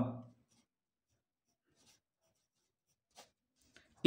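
Faint scratching of a pencil writing a word on a printed book page, in short strokes, with a slightly louder tick a little after three seconds in.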